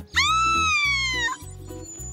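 A young girl's high-pitched scream of fright at a worm: one long cry of just over a second that falls slightly in pitch and stops abruptly, over light background music.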